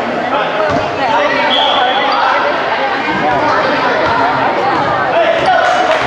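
Basketball bouncing on a hardwood gym floor during a game, under constant talk and calls from players and spectators in an echoing gym. A brief high squeak comes about a second and a half in.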